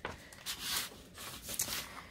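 Clear plastic sleeve and paper envelope rustling and crinkling as they are handled, in a few short bursts of crinkle.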